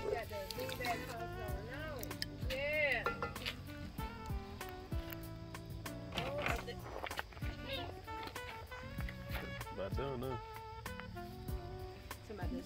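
Music with held notes and a voice that swoops up and down in pitch, with scattered light clicks throughout.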